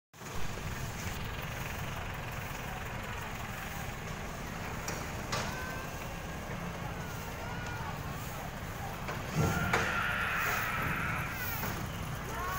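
Open-air street ambience: a steady low rumble of distant traffic and motorbikes, with faint voices, and one person exclaiming "oh" about nine seconds in.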